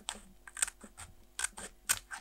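Small scissors cutting a strip of paper, close up: about five short, crisp snips as the blades work along the page.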